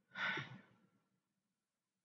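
A short breath sigh close to the microphone, lasting about half a second, then near silence.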